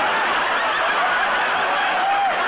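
Studio audience laughing steadily at a sitcom punchline, heard through an old television soundtrack.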